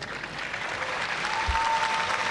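Audience applauding, the clapping growing louder.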